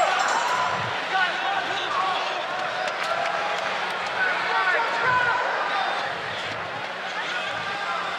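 Fight-arena crowd noise: a steady din of many voices, with scattered shouts from spectators and the fighters' corners.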